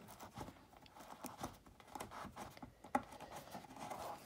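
Faint scratching and rustling of a plastic lampshade tucking tool pushing fabric into the inside edge of the shade, with a few light clicks, the sharpest about three seconds in.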